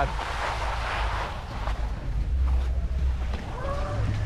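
Skis sliding and scraping over wet, slushy spring-like snow, with wind buffeting the helmet camera's microphone as a low rumble. A brief voice sound comes in near the end.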